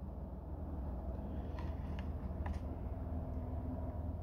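Steady low outdoor background rumble, with a few faint light clicks between about one and a half and two and a half seconds in as a plastic blister pack is handled.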